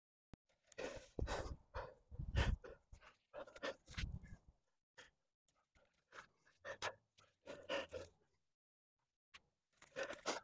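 A rock climber breathing hard from exertion on a hard climb, in irregular heavy gasps, some close and deep.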